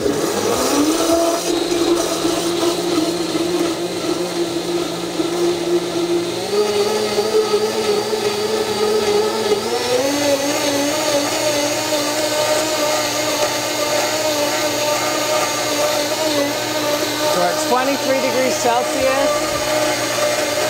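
Blendtec blender motor starting up and running at high speed, churning a jar of a dozen raw eggs. Its whine steps up in pitch twice, about six and about ten seconds in.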